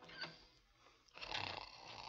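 Faint heavy, rasping breath of a man in a drugged sleep, one long breath starting about a second in, preceded by a small click. This is a radio-drama sound effect.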